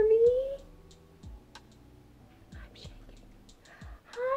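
A woman's soft, drawn-out vocal sound that rises slightly and stops about half a second in, followed by quiet with a few faint clicks.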